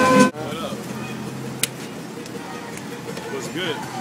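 Music stops abruptly a moment in, leaving the steady low noise of a moving van's cabin, with faint voices and one sharp click.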